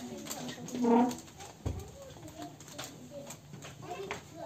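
Children's voices chattering in a classroom, one voice loud about a second in, with a low thump and small clicks.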